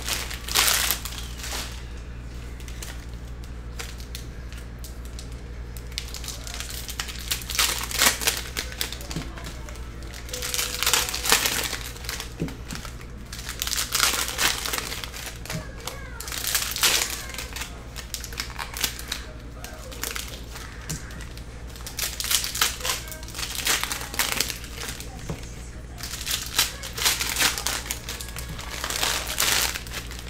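Plastic trading-card pack wrappers crinkling in short bursts every few seconds as packs are opened and cards handled, over a steady low hum.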